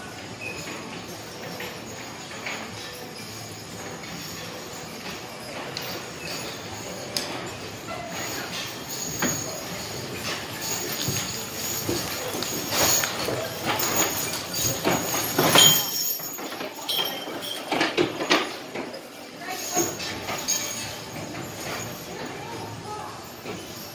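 Harnessed draft horses walking past on arena sand, hooves clopping and harness hardware jingling and clinking. The sound grows louder around the middle as a horse passes close by, with people talking in the background.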